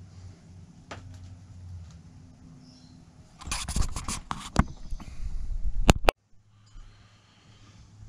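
Camera handling noise: a hand grips and carries the camera, giving a run of loud knocks and rubbing on the body right at the microphone for about two and a half seconds, which cuts off suddenly. Before that there is only a faint low hum and a light tap.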